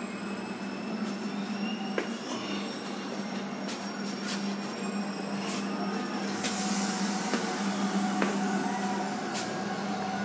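A steady low machine hum with faint, slowly drifting high whining tones. A few short clicks and knocks are scattered through it.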